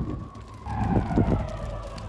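Dramatic TV-promo sound effects: a sudden loud hit followed by a low rumble and a falling tone.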